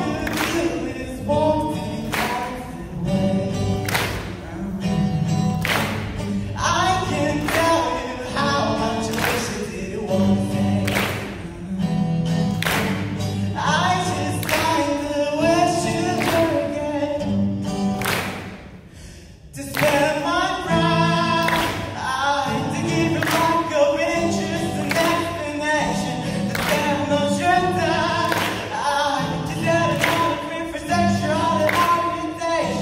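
A song performed live: a solo singer accompanying himself on a strummed acoustic guitar, the strums at a steady, even pace. The music drops away briefly about two-thirds of the way through, then resumes.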